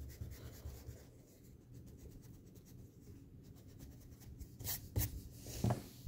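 Pencil marks being rubbed out with an eraser on a paper workbook page: faint back-and-forth rubbing, with two louder short scuffs near the end.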